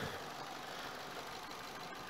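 Faint, steady idle of a 2006 Vauxhall Corsa engine, running again after a new crankshaft sensor was fitted to cure its intermittent cutting out.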